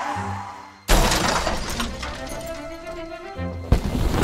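Cartoon crash sound effect of a falling box: a sudden loud smash about a second in, trailing off into clattering and shattering, over background music. A second sharp hit comes near the end.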